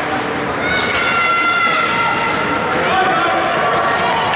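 High-pitched shouts and calls from players and spectators during a youth ice hockey game, over the arena's steady hubbub. One long high call is held for about a second and a half, starting just under a second in, and lower calls follow near the end.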